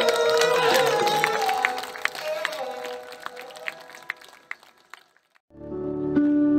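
An Indian classical ensemble of tabla and string instruments plays a held note that glides in pitch, under sharp tabla strokes. The music thins out and fades over about three seconds to a brief silence. Sustained electric piano notes begin near the end.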